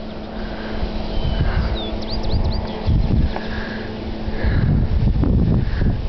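1.6-megawatt wind turbine's blades hissing softly in the wind as they go by, over a faint steady hum and gusty wind noise on the microphone. A few short high chirps come about two seconds in.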